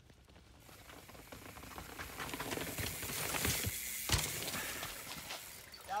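Mountain bike coming down a rocky dirt trail toward and past the microphone: tyres crunching and skidding over dirt and rock, with a run of rattling clicks. It grows louder to a peak a few seconds in, with one heavy thump about four seconds in.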